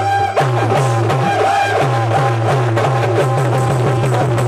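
Instrumental accompaniment for a Rajasthani folk bhajan: a wavering keyboard melody over a repeating bass line and a steady dholak beat.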